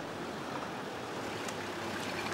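A four-wheel drive coming along a sealed road: a steady hiss of tyres and engine with a faint low hum.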